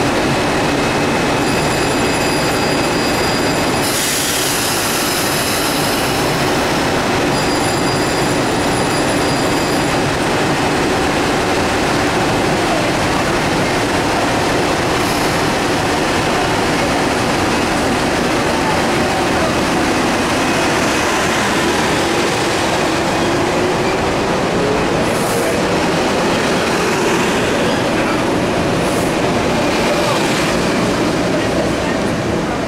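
Metro-North electric commuter train departing a station: a high steady tone sounds twice in the first ten seconds with a burst of hiss between, then the train rolls past close by, its motor whine rising in pitch as it speeds up.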